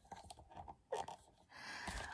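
Faint breathing with small clicks and rustles from a woman shifting in bed in pain. A breath swells near the end into a sigh.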